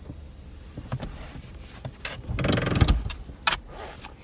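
Hands rummaging around the inside of a car, with a few short knocks and clicks and a louder noisy burst of about half a second a little past the halfway point, over the low hum of the car's idling engine.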